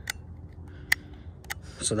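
Three sharp metallic clicks, the strongest about a second in: the safety of a Savage 64 .22 rifle being worked on and off.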